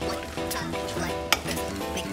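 Wooden spoon stirring thick coconut cake batter in a glass bowl, with a couple of sharp clicks of the spoon against the glass, over background music.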